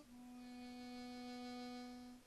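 Solo harmonica music holding one long, low note.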